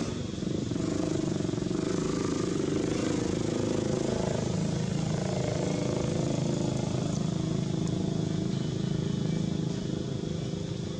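A motor engine running steadily, with a continuous low hum, mixed with people's voices.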